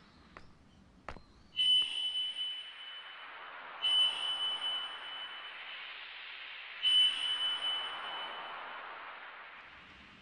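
A ringing, chime-like sound effect struck three times, about two to three seconds apart. Each strike rings with a clear high tone and then fades into a long shimmering wash.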